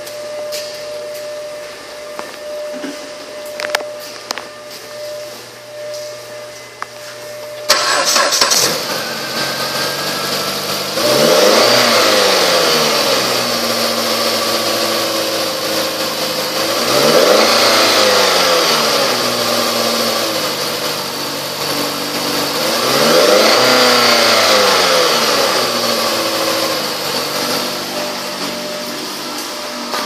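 A steady hum, then about eight seconds in the 2011 Jeep Patriot's 2.4-litre four-cylinder engine starts. It idles and is revved three times, about six seconds apart, each rev rising and falling in pitch.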